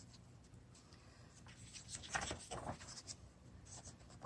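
Faint rustling and light scraping of paper as a page of a softcover coloring book is turned and smoothed by hand, in a few soft strokes about halfway through.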